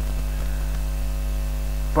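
Steady low electrical mains hum with a faint hiss, continuous and unchanging.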